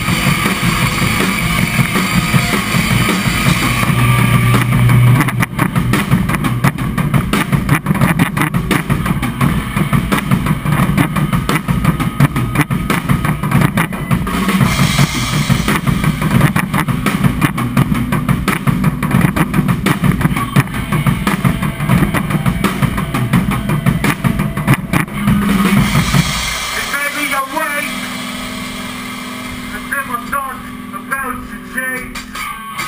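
Melodic hardcore band playing live: drum kit and distorted electric guitars at full volume. About 26 seconds in, the full band drops out into a quieter, thinner guitar passage.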